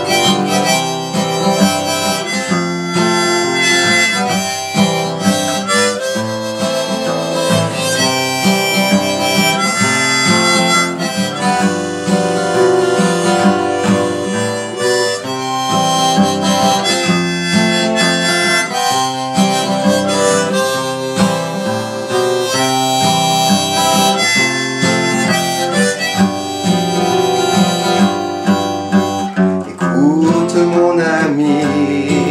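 Harmonica playing a melody over a strummed acoustic guitar, blown from a neck rack by the guitarist: the instrumental break of a folk song.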